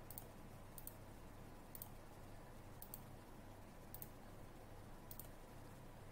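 Faint computer mouse button clicks, six in all at roughly one-second intervals, each a quick double tick of press and release, as control points are placed one by one along a curve. A low steady hum sits underneath.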